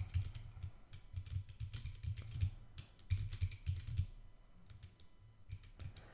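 Computer keyboard typing: quick runs of keystrokes for the first three seconds or so, then fewer, scattered keystrokes.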